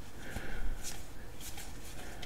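Pokémon trading cards sliding against each other as they are flipped through by hand, with a few faint swishes.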